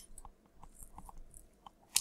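A few faint, short clicks spread over the pause, close to the microphone, with low room hiss between them.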